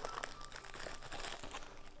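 Packaging crinkling as it is handled by hand: a low, steady run of small crackles and rustles.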